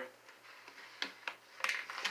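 A few light clicks and taps of a plastic ruler being picked up and handled on a desk: one sharp click about halfway through and a couple more near the end.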